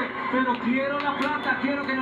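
Speech: voices talking, with no other clear sound.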